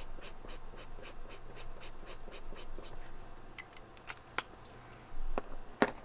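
Brush-tip marker scrubbing back and forth on paper in quick, even strokes, about five a second, for the first three seconds. Then a few light clicks and knocks follow, the loudest just before the end.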